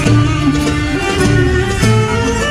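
Greek Asia Minor folk dance music played loudly, a melody with fiddle and plucked strings over a steady low beat.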